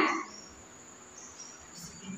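A lull in speech: quiet room tone with faint, high-pitched insect chirps in the middle.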